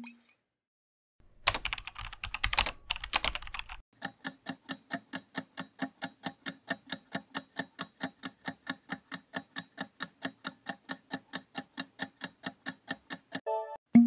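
Keyboard-typing sound effect for about two and a half seconds, starting about a second in, followed by a countdown clock sound effect ticking steadily about four times a second. Near the end come a short chime and a loud low thump.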